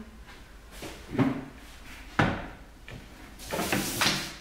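Paper sheets and a round white plastic container being handled on a table. Two sharp knocks come about one and two seconds in, then papers rustle near the end.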